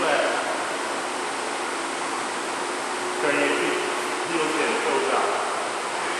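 A steady hiss of background noise, with faint, indistinct voices a few times, mostly in the second half.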